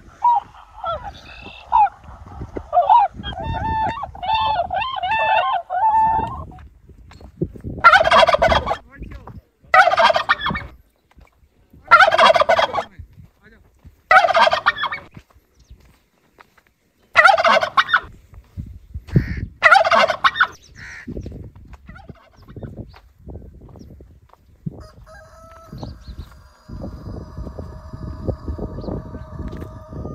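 Loud bird calls: rapid chattering calls for the first six seconds, then six loud, drawn-out calls about two seconds apart. Near the end a steady droning tone comes in.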